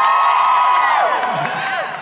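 Audience cheering with several long, high-pitched whoops held together, mostly dying away about a second in, with one last whoop trailing off near the end.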